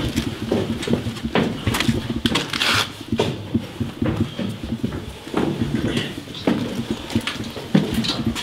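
Irregular knocks and clicks, footsteps and bumps on a handheld camera as it is carried through a dark building, with a short hissing scuff about two and a half seconds in.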